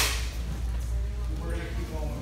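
A single sharp slap at the start, the loudest sound, followed by indistinct background voices over a steady low hum.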